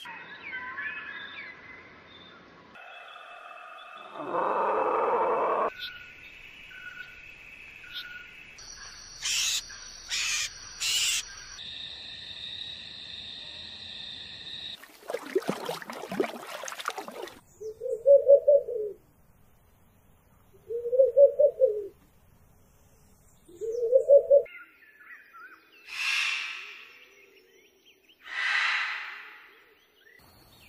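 A run of different bird calls, changing every few seconds: chirps and held whistled notes first, then a brief rushing noise, then three loud short low hooting calls about three seconds apart, and two more calls near the end.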